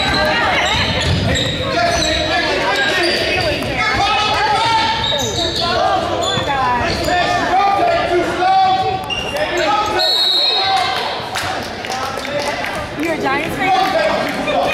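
A basketball being dribbled and bouncing on a hardwood gym floor during play. Indistinct voices of players and spectators echo in the large hall.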